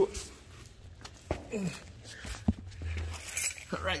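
Handling noise from a phone camera being moved about: a few sharp clicks and knocks, the plainest about a third and two-thirds of the way through, over a low rumble, between brief bits of quiet voice.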